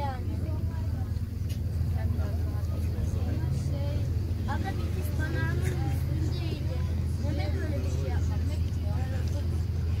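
A boat's engine running steadily underway, a constant low drone, with people talking faintly over it.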